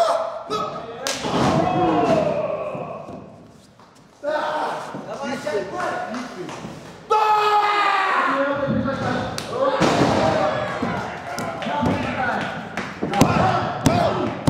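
Wrestlers' bodies thudding and slamming onto the canvas of a wrestling ring, several sharp impacts, over shouting voices.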